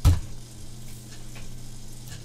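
A single sharp keystroke on a computer keyboard, the Enter key confirming a typed value, then a steady low hum with a faint hiss from the recording.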